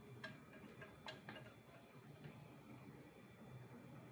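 Near silence, with a few faint, scattered clicks from a small saucepan of caramelizing honey as it is stirred with a silicone whisk.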